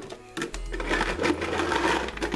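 Small plastic dinosaur figures clattering against each other and the clear plastic bucket as a hand rummages through them, starting about half a second in as a dense, rapid rattle.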